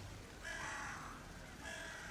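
Harsh bird calls, twice: one about half a second in, lasting under a second, and another starting near the end.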